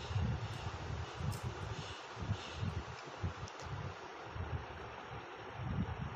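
Low, uneven rumbling and buffeting on the microphone, over a faint steady hiss.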